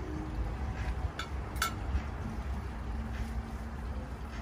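Steady low outdoor rumble, with two quick clinks of a metal fork set down on a plate a little over a second in.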